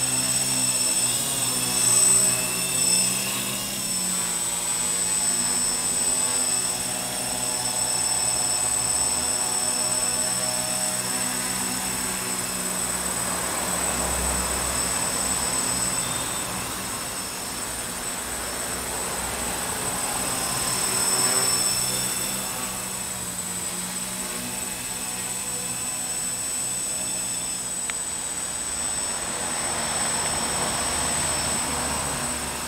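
Xaircraft X650 quadcopter in flight: its motors and propellers hum with a steady high whine, the pitch wavering as the motors speed up and slow down. There are louder swells about two seconds in and again about two-thirds of the way through.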